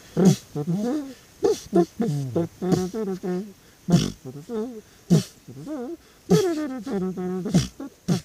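Male voices singing a slow, wavering tune with long held notes, broken by several sharp thumps between phrases.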